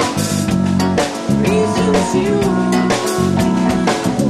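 A live band playing: a man sings over an electric keyboard, with a drum kit keeping a steady beat and bass underneath.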